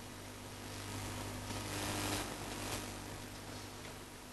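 Quiet room tone with a steady low hum, and a soft rustle of papers handled on a desk that rises about a second in and fades by about three seconds.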